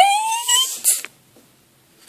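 The drawn-out end of a spoken "oh," rising in pitch and fading out within the first second. A short rustle or click follows, and then it goes quiet.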